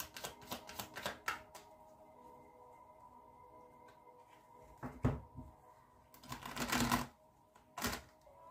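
A deck of tarot cards being shuffled by hand. A quick run of flicking card clicks fills the first second and a half, a single thump comes about five seconds in, and a longer riffling rush runs near the end.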